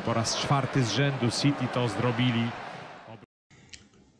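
Speech: a man's voice, apparently the TV match commentator, talks over the broadcast for about two and a half seconds, then fades away. A brief total drop-out follows near the end.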